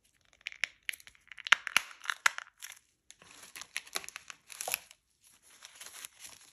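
Thin plastic gloves and paper and plastic first-aid packaging crinkling and crackling as they are handled, in irregular bursts of crisp crackles with short pauses between them.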